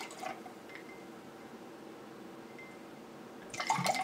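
Vodka poured from a bottle into a glass container over ice cubes: faint, steady pouring.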